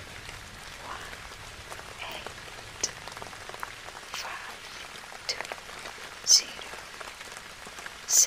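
Steady rain ambience, an even hiss with scattered drop-like ticks, with a short sharp hiss about six seconds in.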